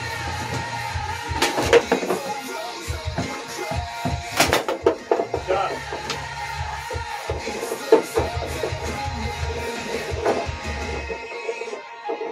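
Background music with guitar plays throughout, over a foosball rally. Sharp knocks of the ball struck by the rod figures and hitting the table cut through the music, the loudest about four and a half and eight seconds in.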